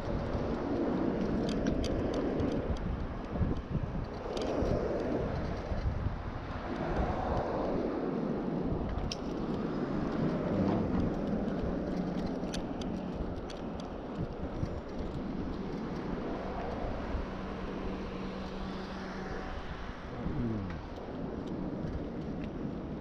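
Wind buffeting a handlebar-mounted action camera's microphone while cycling, with tyre rumble and small rattles from the bike. Road traffic passes alongside: a steady low hum through the second half, and a vehicle going by with a falling pitch near the end.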